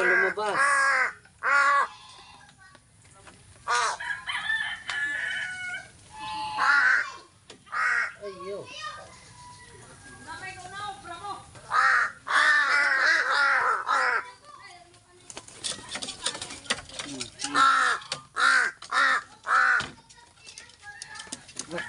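Pet crows cawing loudly in repeated bouts of harsh calls, the longest run lasting a couple of seconds near the middle. The birds are hungry, waiting to be fed.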